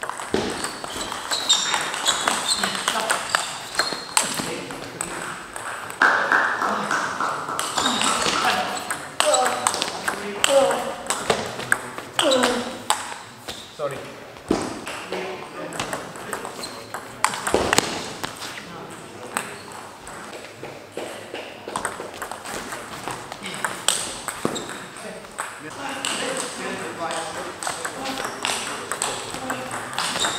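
Table tennis ball clicking sharply off the bats and the table again and again during rallies, with voices talking in the background of the hall.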